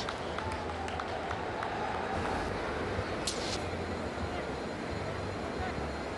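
Steady stadium crowd ambience from a cricket ground: a low, even murmur of spectators with a brief hiss about three seconds in.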